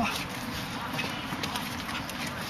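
Irregular sharp slaps and taps of forearms and hands striking and blocking in Wing Chun sparring, with shuffling feet.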